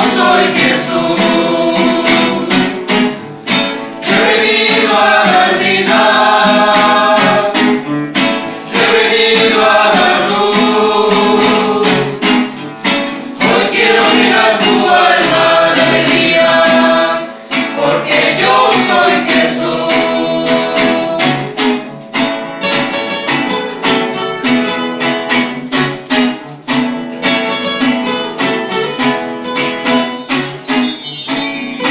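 A mixed group of men and women singing together in unison, accompanied by strummed acoustic guitars.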